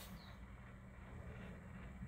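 Near silence in a small room: quiet room tone with a faint, steady low hum.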